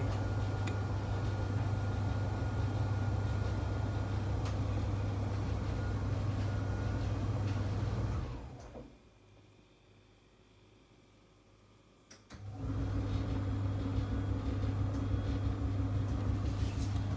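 A steady low hum with a light hiss. It fades out about eight seconds in, leaving near silence for about four seconds, then comes back with a steady higher tone added.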